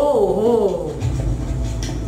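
A short wavering vocal cry, its pitch rising and falling twice within the first second, over a steady low hum.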